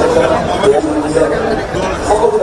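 Crowd chatter: several people talking at once.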